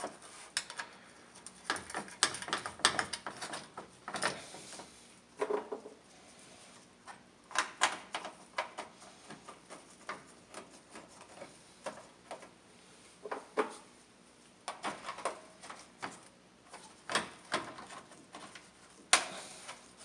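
Scattered light clicks and rattles of a car hood latch and its mounting bolts being handled and set in place by hand on the radiator support, at irregular intervals.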